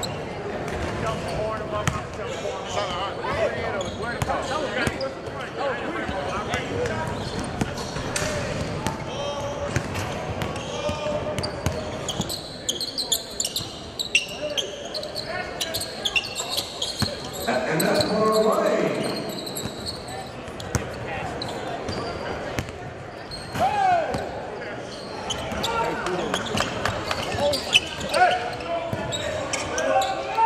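Basketballs bouncing on a hardwood gym floor amid the chatter of players and onlookers, echoing in a large gym, with a louder swell of voices just past halfway.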